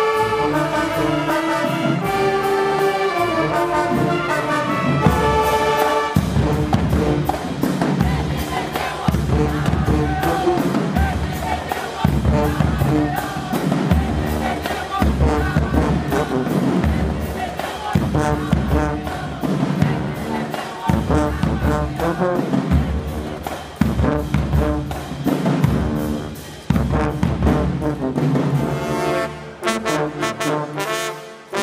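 Marching band of sousaphones, trumpets and other horns with drums. The horns hold a melody for the first few seconds. A drum-driven stretch of heavy, regular low beats with short horn hits follows, and the sustained horns come back near the end.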